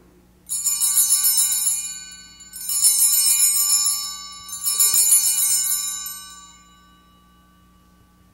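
Altar bells (Sanctus bells) rung three times, about two seconds apart, marking the elevation of the consecrated host. Each ring is a bright jangling shake that fades away, the last dying out a little over six seconds in.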